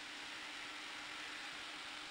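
Steady low hiss of room tone and microphone noise with a faint, even hum underneath; nothing else happens.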